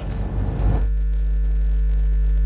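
Steady electrical mains hum, a low buzz with a few fainter overtones above it. It builds over the first second, then holds level.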